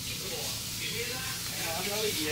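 Steady hissing background noise, with faint voices under it.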